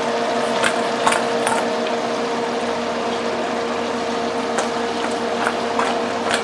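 Chicken wings deep-frying in a pot of hot oil: a steady sizzle and bubbling over a steady hum. A few light clicks come through as wings are tossed in sauce in a stainless steel bowl.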